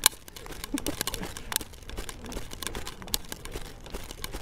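Rustling and handling noise from a hand-held phone camera carried at a quick walk, with scattered sharp clicks, the loudest right at the start and about a second and a half in. A brief voice fragment comes just under a second in.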